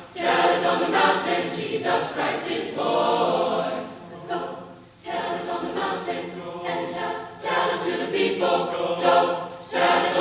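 Mixed high school choir singing in parts, in sustained phrases with a brief pause for breath about four to five seconds in.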